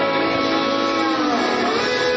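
Live rock band playing an instrumental passage with electric guitar to the fore; a held note slides down and back up near the end.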